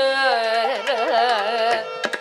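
Carnatic vocal music: a woman's singing voice sliding and oscillating in pitch through ornamented phrases, with violin accompaniment over a steady tanpura drone.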